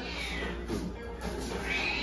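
Background music, with a faint, high, thin whine that rises and falls near the end, typical of a Cavalier King Charles spaniel puppy whimpering.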